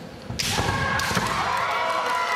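Kendo strike exchange: a sudden hit and floor stamp about half a second in, then a long, high-pitched kiai shout from a woman fencer, with another sharp crack of bamboo shinai about a second in. This is the attack that the referee's raised flag shows to have scored a point.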